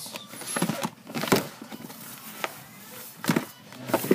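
Hands rummaging through items in a plastic storage bin: irregular clicks and knocks with rustling between them, the loudest a little over a second in.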